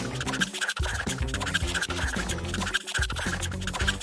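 Felt-tip marker scratching rapidly back and forth on paper as an area is coloured in, over background music.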